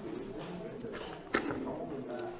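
Indistinct, low voices of people talking in a small room, with a single sharp knock a little past halfway.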